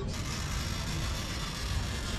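Steady street background noise: a continuous low rumble with a hiss over it and no distinct events.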